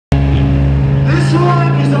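Live rock band: guitars and bass holding a loud sustained chord, with a voice coming in about a second in.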